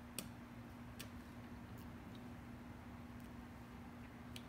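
Lips clicking softly on an unlit cigar during a dry draw: a few small, irregular clicks over a faint steady hum.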